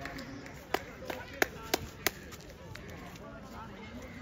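Distant shouting voices at an outdoor football match, with five sharp hand claps at an even pace of about three a second from just under a second in.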